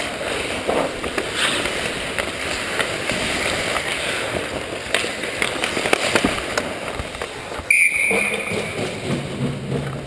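Ice hockey play: steady skate-blade scraping with frequent sharp clacks of sticks and puck. Near the end a sharp knock is followed by a referee's whistle blown for about a second, stopping play, and then players' voices.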